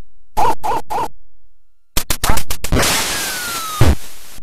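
8-bit NES light-gun game sound effects: the hunting dog's three short barks, then a quick run of clicks as a duck flies up. About three seconds in a shot goes off as a burst of noise, the hit duck drops with a falling whistle, and it lands with a thump near the end.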